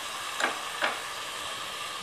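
Chopped tomatoes, onion and green chillies sizzling steadily as they fry in oil in a pot, with two short taps about half a second and just under a second in.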